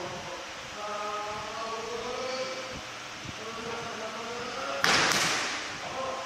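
Kendo kiai: long, wavering drawn-out yells from the young fencers facing off. About five seconds in, a sudden loud burst with two sharp hits that dies away over about a second as one of them attacks with a shout.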